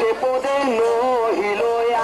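Devotional kirtan singing: a sung melody that glides between notes, with musical accompaniment.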